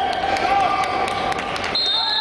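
Voices calling out in a sports hall during a wrestling bout, with several sharp knocks or slaps scattered through.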